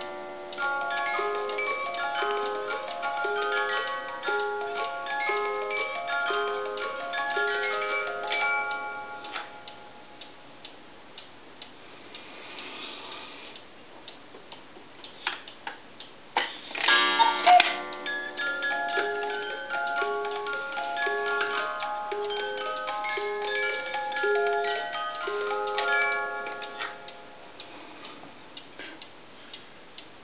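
Musical cuckoo clock's music box plucking out a tune over the steady tick of the clock's movement. The tune stops about nine seconds in, leaving only the ticking; after a clatter of clicks near the halfway point, the tune plays again for about ten seconds, then the ticking goes on alone.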